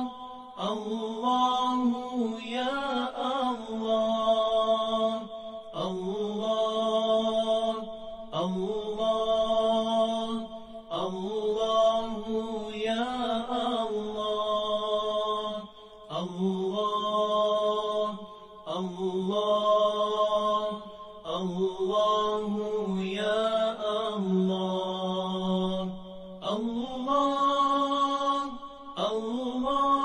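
A single voice chanting a melody in long, drawn-out phrases of about two to three seconds each, with short pauses between them, about a dozen phrases in all.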